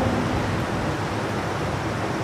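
A steady, even hiss of background noise with no distinct event.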